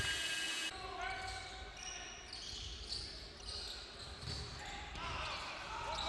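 Basketball game sound in an indoor arena: a ball bouncing on the court with voices from players and crowd. The sound drops sharply at an edit cut about a second in.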